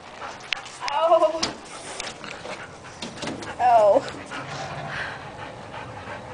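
Excited dog whining twice, a high wavering whine about a second in and another near four seconds, with panting and a few light scratches or clicks.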